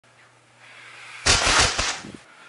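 A person dropping backward onto a bed: a sudden thump with a rustle of bedding and clothes about a second in, lasting under a second and broken by several sharp strokes.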